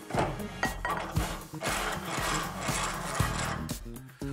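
Steel workpieces handled at a cast-iron bench vise: a flat bar scraping out of the jaws and a wider piece being set in, with a few sharp metal knocks about a second in, at about a second and a half and at about three seconds. Background music runs underneath.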